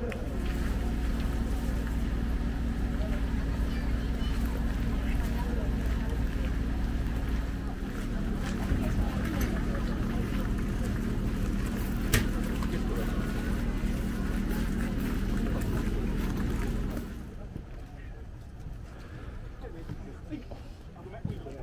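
A steady low engine hum running under people talking, with one sharp click near the middle; the hum stops about seventeen seconds in.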